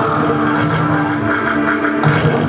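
Dance soundtrack music with long held notes over a steady low drone.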